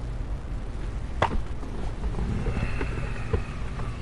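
One sharp click about a second in, then several lighter clicks, over a steady low hum.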